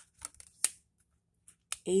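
Tarot cards being handled as the top card is moved off the deck to show the next one: a few short, crisp clicks and snaps of card stock, the sharpest about two-thirds of a second in and again just before a spoken word near the end.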